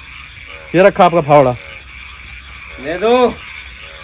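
A man's voice raised in two loud outbursts without clear words, about a second in and again near three seconds, over a steady background of frogs croaking.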